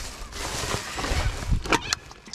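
Black plastic bin bag rustling and crinkling as it is handled, with drink cans and bottles inside knocking and clinking together; a few sharper clinks come near the end.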